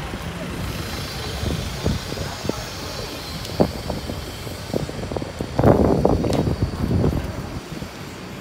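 Outdoor city street noise with traffic, broken by scattered short knocks and a louder stretch of low rumbling a little past the middle.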